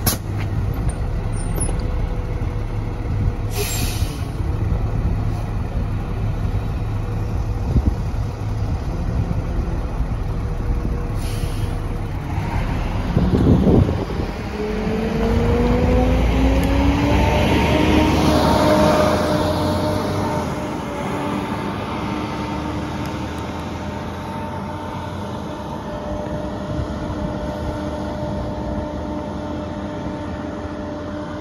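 Volvo B7TL double-decker bus idling, with short hisses of air, then a loud burst of air-brake release about halfway through. It then pulls away with a rising whine from its engine and gearbox that climbs in steps through the gears and fades into the distance.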